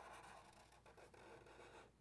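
Faint scratching of a black marker tip drawing a curve on paper, barely above silence.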